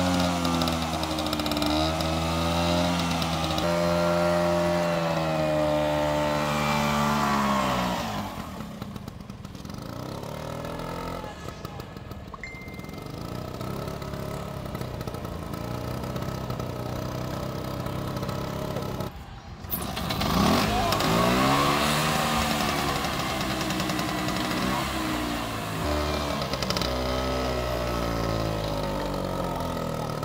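Single-cylinder two-stroke engine of a vintage Vespa scooter running and being revved, its pitch rising and falling for the first several seconds. About eight seconds in it settles to a quieter, lower run; after a brief break later on it revs up again, its pitch rising and falling as the scooter is ridden.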